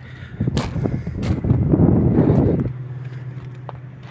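Hitachi ZW310 wheel loader's diesel engine idling with a steady low hum. From about half a second in until nearly three seconds, a loud rough rustling noise with a few sharp clicks covers it, then the idle carries on alone.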